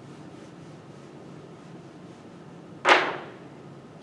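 Whiteboard eraser against the board: one short, sharp, loud swish-knock about three seconds in, over a steady quiet room hum.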